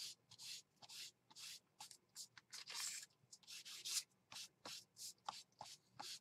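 An ink pad swiped directly across a sheet of paper in a series of short, faint rubbing strokes, about two or three a second, inking a pink frame around the page.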